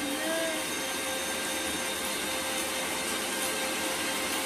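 Electric mixer grinder (mixie) running steadily, grinding spices fine.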